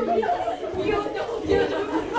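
Several students' voices chattering over one another in a classroom.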